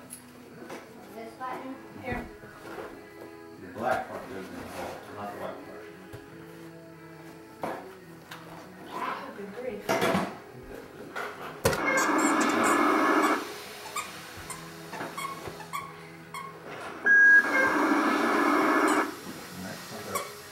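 A battery-powered electronic toy playing a sound effect twice, each burst starting suddenly and lasting about a second and a half, over faint background music.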